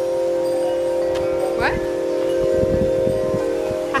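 Wind chimes ringing, several low notes sounding together and ringing on steadily.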